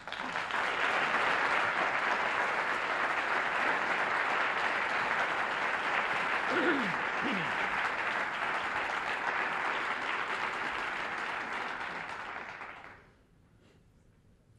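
Audience applauding steadily to greet a speaker who has just been introduced, then dying away about a second before the end.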